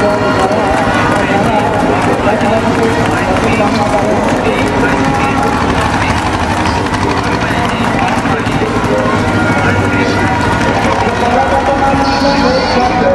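A man speaking, his recorded video message played back over loudspeakers.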